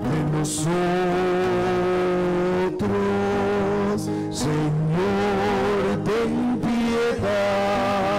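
Sung church music: a voice holding long, wavering notes over sustained instrumental accompaniment, the melody stepping from note to note about once a second.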